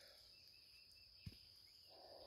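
Near silence with a faint, steady, high-pitched cricket trill, and one soft tap a little past the middle.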